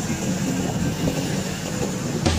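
Road traffic: motorbike and car engines running and passing along a city street, a steady rumble.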